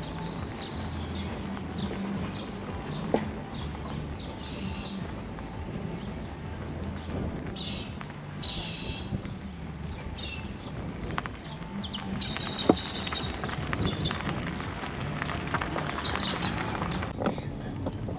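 Car driving slowly along an unsealed driveway with a steady low rumble of road and engine noise. Birds chirp a few times midway, and a run of small crackling clicks comes in the last few seconds.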